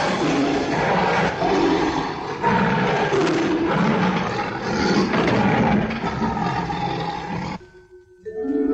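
A cartoon lion roaring again and again over background music, cutting off suddenly just before the end.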